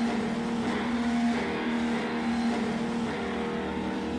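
Live rock concert sound: a held, distorted electric guitar note over dense stage and crowd noise.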